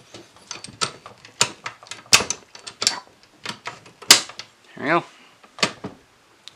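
Irregular clicks and knocks of metal and plastic parts as the outer barrel of an A&K M249 airsoft gun is slid back on over the hop-up and feed block and seated.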